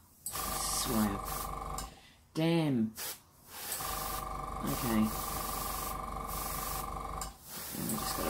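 Airbrush fed by a small compressor, running in two long bursts of hissing air with a steady hum. It stops for about two seconds shortly after the start and again near the end. Short falling vocal sounds come in between the bursts.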